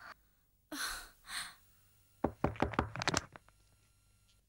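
Two short breathy sounds, then a rapid run of about eight sharp knocks.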